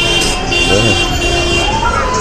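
A car horn blaring in one long held blast for about a second and a half, amid street noise and people whooping and shouting from passing cars.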